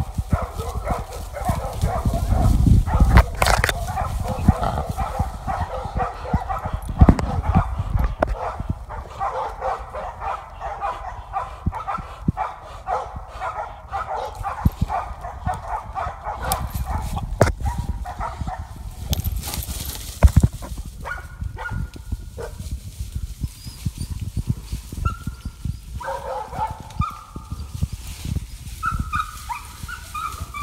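Dogs baying and barking in a continuous overlapping chorus, thinning in the second half to separate yelps and whines. Heavy rustling and crunching of footsteps through underbrush runs underneath.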